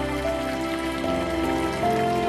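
Water falling in a thin stream from a pipe spout into a stone basin, splashing steadily, heard together with soft background music of slow sustained notes.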